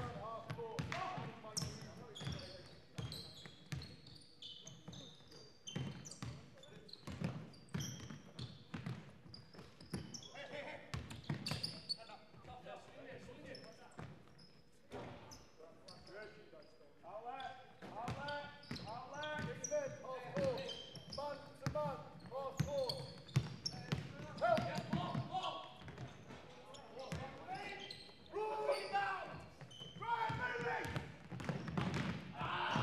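A basketball game heard in an echoing sports hall: the ball dribbled on the wooden court, trainers squeaking, and players shouting to each other. The shouting is strongest a little past halfway and again near the end.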